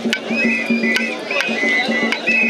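Rhythmic traditional singing, with short high two-note phrases repeating about every half second over a low sung line, and sharp strikes cutting in at irregular moments.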